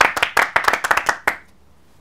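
Several men clapping their hands in a quick, short round that stops about a second and a half in.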